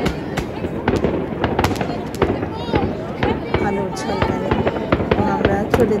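Fireworks going off in a string of irregular, sharp bangs, several every second, with voices talking over them.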